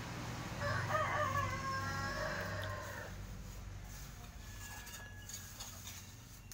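A rooster crowing once: a single call of about two and a half seconds, starting just under a second in.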